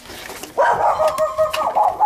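Penned game birds calling: one sustained, rapidly pulsing call that starts about half a second in and lasts about a second and a half.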